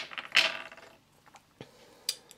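Fingers picking a tiny nose stud out of a small cut-glass dish: a sharp click at the start, a short scraping rattle of the stud against the glass about half a second in, then a couple of faint ticks.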